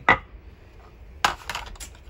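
Hard objects being moved and set down on a wooden tabletop: a sharp knock right at the start, then another knock about a second in followed by a brief clatter.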